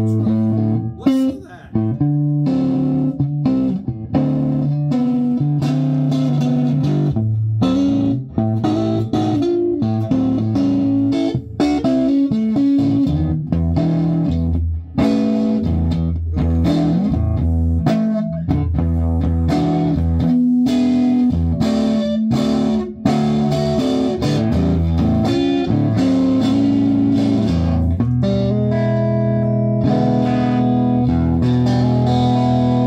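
Electric guitar played through a 1957 Danelectro Commando tube amplifier, four 6V6 output tubes driving 8-inch speakers: a continuous run of notes and chords with strong low bass notes.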